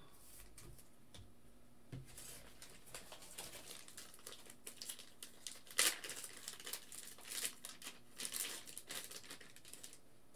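Quiet plastic crinkling and rustling as trading cards are slid into soft plastic sleeves, with a sharper crackle about six seconds in.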